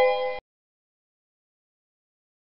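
A short electronic computer chime of several steady tones sounding together, with a click near its start, cut off abruptly less than half a second in. Dead silence follows.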